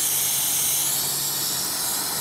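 Aerosol can of white lithium grease spraying in one long, steady hiss.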